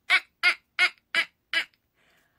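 A woman laughing in a run of short, evenly spaced 'ha' bursts, about three a second, that stops shortly before the end.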